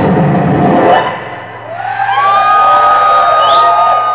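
A live noise-rock band's full playing, with guitar and drums, breaks off about a second in. After a short dip, long sustained tones come in, sliding up into a steady high note, with more gliding pitches over them. It sounds like synthesizer or feedback drones ringing out at the end of the song.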